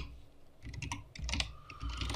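Typing on a computer keyboard: a quick run of keystrokes, most of them between about half a second and a second and a half in.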